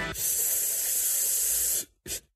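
Intro music stops and a loud, steady hiss follows, bright and high-pitched, lasting about a second and a half before cutting off suddenly.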